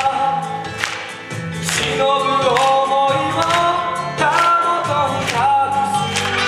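Live stage song: vocals sung in long, wavering held notes that slide between pitches, over band accompaniment with sharp percussion strikes about once a second.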